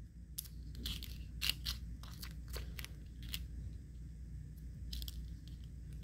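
Faint, irregular crackles and ticks of a thin RapidMask sandcarving stencil film being pressed and shifted by fingers on a glass mirror tile, over a low steady hum.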